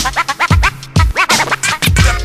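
Hip-hop beat with DJ turntable scratching: quick rising-and-falling scratches over a kick drum, pausing briefly just before the one-second mark.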